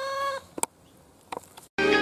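Rooster crowing, its long held call ending about half a second in. A couple of faint clicks follow, and music starts near the end.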